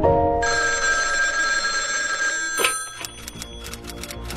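Old desk telephone's bell ringing: a sustained ring, then a sharp click and a rapid run of bell strokes in the last second or so. The tail of background music ends just after the start.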